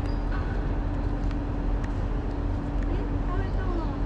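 Steady outdoor background rumble and hiss with a constant low hum tone, and faint brief voices about half a second in and near the end.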